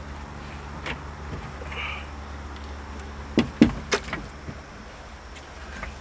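Light handling clicks and knocks: one a little under a second in, then three sharper ones close together between about three and a half and four seconds in, over a low steady hum.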